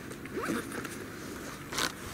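Rustling and scraping handling noise, with a sharp rasp near the end as the camera is lifted off the leaf-covered ground.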